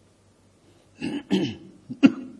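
A man clearing his throat in two short bursts about a second in, then another sharp burst right at the end.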